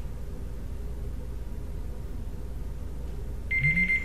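Electronic timer beeping to signal that time is up: one high, steady beep near the end, over a faint low hum.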